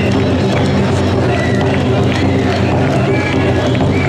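A large group of mikoshi bearers chanting in unison as they carry the portable shrine, the traditional "wasshoi, wasshoi" call, in a dense, noisy crowd.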